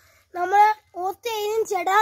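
A boy speaking in a high voice, in short, lively phrases after a brief pause.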